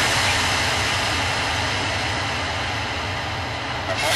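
Electronic noise effect in a hardcore electronic track: a steady wash of rumbling noise with no beat, fading slowly, until the beat comes back at the very end.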